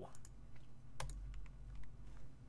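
A few scattered clicks at a computer as a video is opened, the sharpest about a second in, over a low steady hum.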